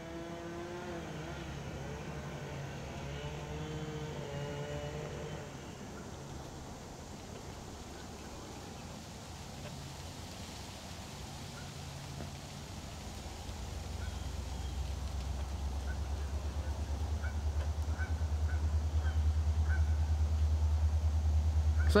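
Diesel-electric locomotive, a CN SD40-2, with a low pulsing engine rumble that grows steadily louder through the second half as the train approaches. A faint wavering tone is heard over the first few seconds.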